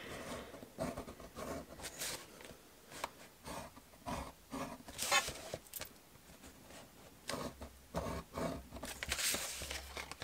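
A metal-tipped stylus drawn along a steel ruler, scoring lines into cardstock: a run of short scratchy strokes with small clicks as the ruler and card are moved, and a longer rustle near the end as the card is handled.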